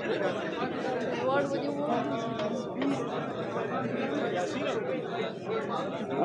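Overlapping chatter of several people talking at once, with no single clear voice.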